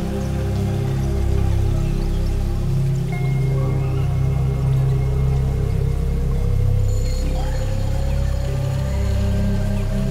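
Ambient electronic music from a Eurorack modular synthesizer: deep sustained bass notes under soft, held pad tones, with one tone slowly gliding upward in pitch from about three seconds in.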